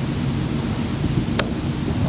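Steady hiss of background noise with one sharp click about one and a half seconds in.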